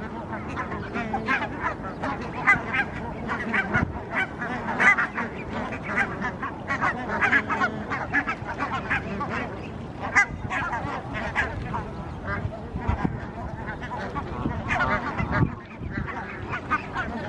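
Many birds calling over one another in a continuous, busy chorus of honking calls.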